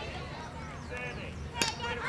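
Faint voices of players and onlookers across the field, with one sharp knock near the end.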